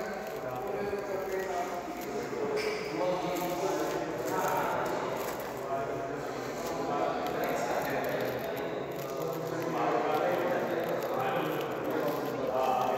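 People talking indistinctly throughout; no clear non-speech sound stands out.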